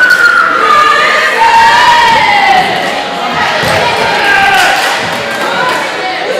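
Spectators in a gymnasium cheering and shouting, several voices holding long calls that slide down in pitch over a general crowd noise.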